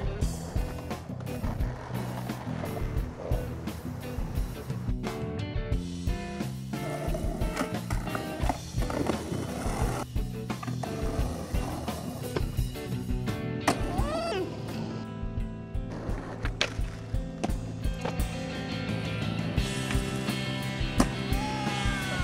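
Skateboard wheels rolling on concrete and asphalt, with repeated sharp clacks of board pops and landings, over background music.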